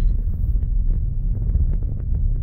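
Road noise inside a moving car: a steady low rumble from the tyres and drivetrain, with wind noise on the phone's microphone.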